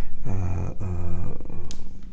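A man's low voice in slow, drawn-out speech or hesitation sounds, in three long stretches.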